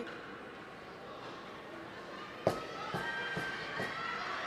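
Ice hockey play in a quiet rink: low arena ambience, then about halfway a sharp crack followed by three lighter knocks, the puck and sticks striking the boards and ice.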